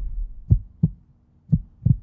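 Heartbeat sound effect: two double thumps, lub-dub, about a second apart, after a brief fading tail of noise at the start.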